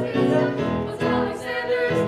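A group of voices singing a musical-theatre number together, several held notes changing every half second or so, with a short break about a second in.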